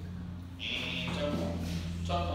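A man's voice speaking briefly, in Mandarin lecture style, over a steady low hum.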